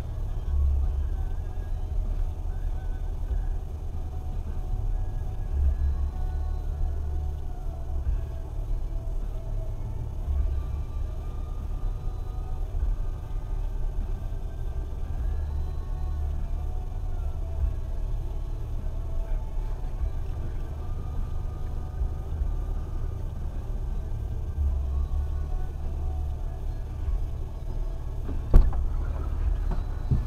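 A 4x4's engine idling with a steady low rumble, heard from inside the cab, with a single sharp knock near the end.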